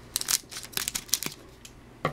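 Scissors snipping the top off a shiny trading-card pack wrapper: a quick run of crisp cuts and wrapper crinkles through the first second or so, then quiet handling.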